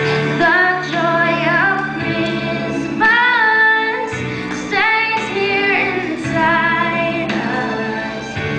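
A group of children singing a song to instrumental accompaniment, sung notes gliding between pitches over held low notes.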